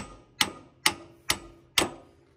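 Steel on steel of a three-point hitch being knocked into line: five sharp metallic strikes about two a second, each with a brief ring, until the part seats.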